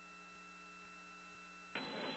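Faint steady electrical hum with a couple of thin high whining tones on an open radio communications line between transmissions; a louder hiss comes in near the end as the line opens for the next call.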